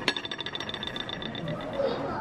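Table knife scraping across pancakes and a ceramic plate while spreading butter: a rapid chattering scrape with a faint ringing tone, lasting about a second and a half.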